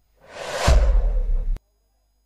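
Broadcast replay transition sound effect: a whoosh that swells over about a second, with a deep bass rumble joining partway through, then cuts off abruptly.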